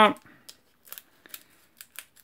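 Scissors snipping into the top of a sealed trading-card booster pack wrapper: a string of short, light snips.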